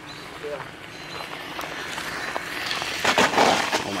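Losi Promoto MX RC motorcycle running on loose gravel, its tyres hissing over the stones and getting louder. About three seconds in comes a louder burst of scrabbling gravel as the bike slides wide through a tight U-turn, a slide the driver puts down to the full gyro setting.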